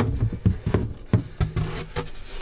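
Plywood floor hatch being pulled up and handled: a few sharp wooden knocks with low thuds and rubbing of wood.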